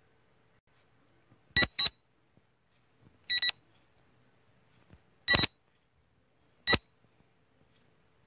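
Quiz countdown timer sound effect: short, high electronic beeps, the first a quick pair about one and a half seconds in, then single beeps roughly every one and a half to two seconds, with silence in between.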